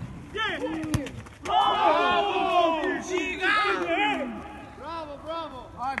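Several men shouting to one another on a football pitch during play, loudest from about a second and a half in. Two sharp thuds near the start, a football being kicked.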